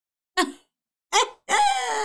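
A woman's voice in short laughing outbursts, three in all, the last drawn out into a longer cry that falls in pitch.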